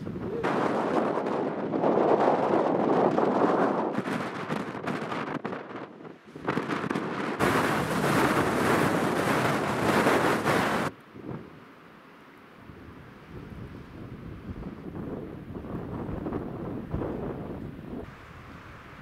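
Strong gusting wind of a blizzard buffeting the microphone, loud and rough in surges for the first eleven seconds, then dropping suddenly to a quieter, steadier blowing.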